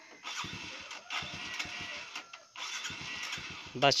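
Small red underbone motorbike's engine being cranked: a rattling run of about two seconds, a brief break, then about a second more.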